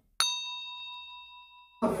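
Notification-bell sound effect for a subscribe-button animation: a single bright ding that rings out and fades over about a second and a half. Hip hop music cuts in just before the end.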